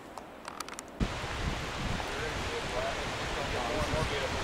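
A small mountain stream running over rocks, a steady rushing that starts suddenly about a second in; before it, a few faint clicks.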